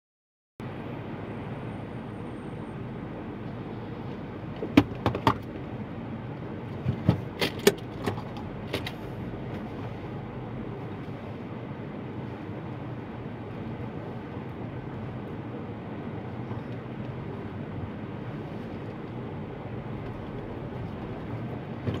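Steady running noise of a car, heard from inside the cabin as it sits and then starts to pull away. A handful of sharp clicks and knocks come about five to nine seconds in.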